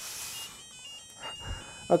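Calliope mini board's small speaker playing a short melody of electronic beeps that step up and down in pitch and stop about a second and a half in. The melody is the board's response to a correct key code, with the door already open.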